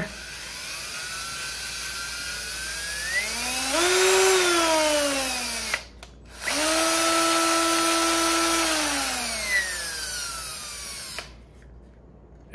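Cordless drill driving an M6 tap into a hole in a plastic PC fan frame, cutting threads. The motor runs twice with a pause at about six seconds: the first run climbs in pitch and then slows, the second holds a steady pitch before winding down and stopping about a second before the end.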